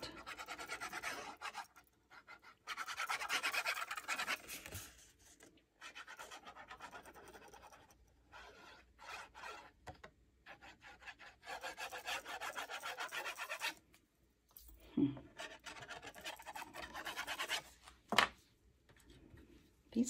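Scratchy rubbing and scraping of paper in bursts of a second or two, from cardstock pages being handled and a fine-tip glue bottle's nozzle drawn along their edges. A couple of short knocks come near the end.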